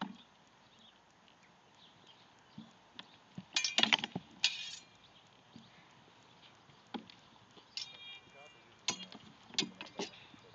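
Swords striking shields and each other in a sparring bout: scattered sharp knocks, with a quick flurry of hits about four seconds in that is the loudest. One blow near eight seconds gives a short ringing clink.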